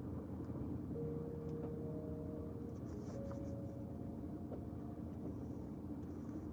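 Steady low rumble inside a parked car, with faint scratching of a pen on paper.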